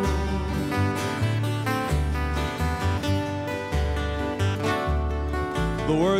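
Steel-string acoustic guitar strumming and picking an instrumental passage of a Hawaiian song, with deep bass notes moving underneath and no singing.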